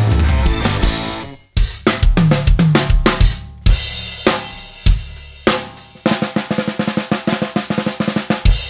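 An intro music track ends abruptly about a second and a half in. An acoustic drum kit then starts playing live, with crash cymbal hits, bass drum and tom strokes in a fill, and from about six seconds a fast, even run of snare and drum strokes.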